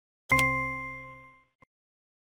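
A single electronic ding: a bell-like chime that starts suddenly and rings away over about a second. It is the interactive exercise's sound effect as the answer 'Yes' is clicked into the blank.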